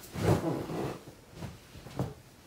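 Bedding rustling and a body shifting as a person climbs onto a bed and lies back, loudest in the first second, with a short sharp sound near the end.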